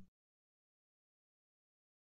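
Digital silence between two spoken phrases, with the tail of the preceding word fading out right at the start.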